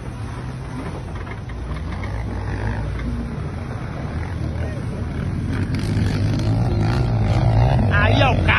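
Volkswagen Amarok's V6 turbodiesel engine pulling under load up a steep grass hill. Its low drone grows steadily louder through the climb.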